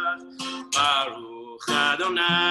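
A man singing a prayer melody to his own acoustic guitar. The voice comes in short phrases with brief gaps, over the guitar.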